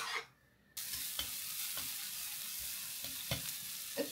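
Sliced onions and spring onions frying in hot oil in a frying pan. The sizzle starts suddenly about a second in and then holds steady, with a few light clicks of metal chopsticks stirring against the pan.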